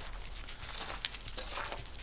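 Faint, light metallic clinks and jingling, with the sharpest few ticks about a second in.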